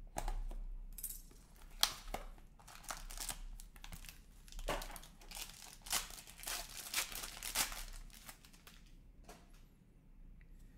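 A hockey card box opened by hand: the cardboard flap is worked with a sharp click a little under two seconds in, then the card pack's black foil wrapper crinkles and tears as it is pulled open. The sound is busiest in the middle and quieter near the end.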